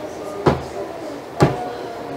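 Two short wooden knocks about a second apart as a book is handled and set down on a wooden pulpit.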